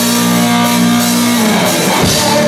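Live rock band playing: the drums and cymbals come in at the start over a held guitar chord, whose low notes slide down in pitch near the end.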